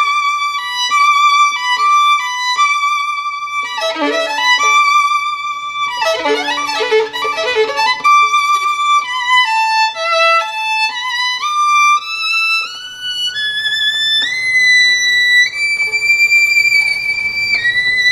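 Solo violin playing a slow melody with vibrato. Partway through it moves into a busier passage with chords and low notes, then climbs step by step to long, high sustained notes near the end.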